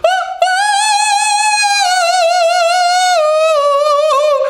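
A man singing one long, high held note with vibrato, with no accompaniment. He is imitating a soprano's head voice. The pitch steps down a little about three seconds in.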